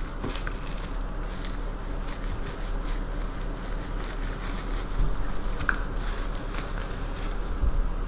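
Plastic wrapping rustling and crinkling as it is cut with a knife and pulled off a small jar, with scattered small crackles over a steady low hum.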